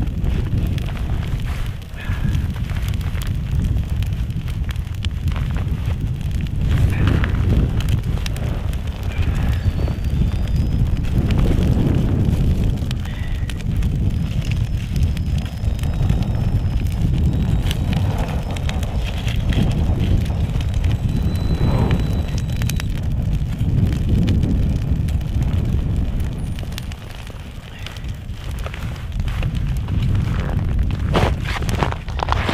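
Wind buffeting the microphone in gusts, rising and falling, over a small twig fire crackling with scattered sharp pops.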